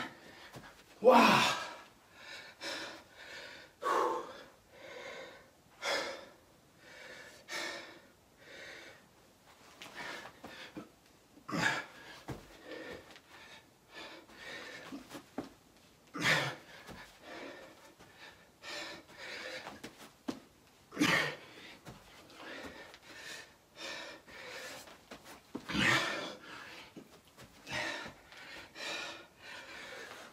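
A man breathing hard and panting through a set of burpees, about a breath a second. Roughly every five seconds there is a louder burst, as each burpee's jump and landing comes round.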